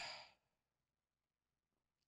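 Near silence: room tone, after the trailing end of a spoken word fades out at the very start.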